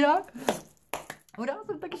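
A woman's voice trailing off, then a quiet gap with a couple of short, sharp clicks, before her voice comes back in.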